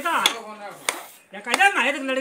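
Two sharp knocks from bricklaying on a brick wall, about two-thirds of a second apart, with people talking around them.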